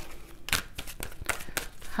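Tarot cards being handled, a run of quick papery clicks and rustles.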